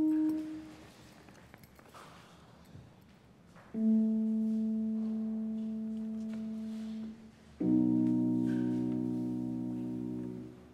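Yamaha Motif XS8 electronic keyboard playing held notes: a short note at the start, a single sustained note from about four seconds in, then a fuller chord from about eight seconds in, each one dying away slowly.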